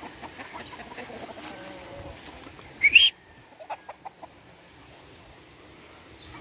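Roosters clucking, with one short, sharp rising call about three seconds in that is the loudest sound, followed by a few faint ticks.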